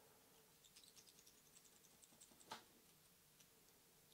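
Near silence with faint small ticks and crackles from fingers and tools working materials on a fly-tying hook in the vise, ending in one louder click about two and a half seconds in.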